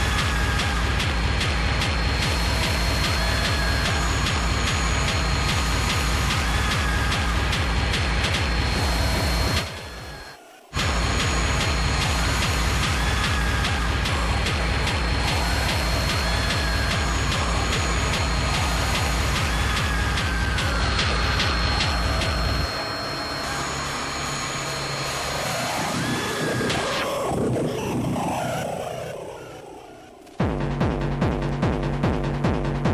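Hardcore techno DJ mix: a steady kick drum under layered synths. It cuts out abruptly for about a second around a third of the way in, then comes back. In the last quarter the kick drops out into a breakdown of swirling synth sweeps rising and falling in pitch, which fade near the end.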